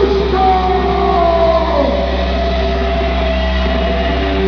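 Live rock band music through an arena PA: sustained, ringing electric guitar notes over a steady low drone, with one note sliding down in pitch about halfway through.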